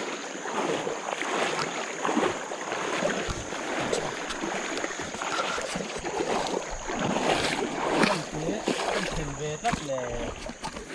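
Shallow river water splashing and sloshing as people wade through it, with irregular splashes from each step.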